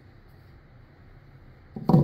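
Quiet room tone, then near the end a short, loud knock as a canvas panel is set down on a wooden table.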